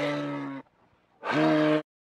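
Two low, drawn-out moose-like bellows, the first ending about half a second in and the second, shorter, coming about a second later.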